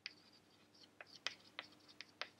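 Chalk on a chalkboard, faint: a few short taps and scratches as words are written.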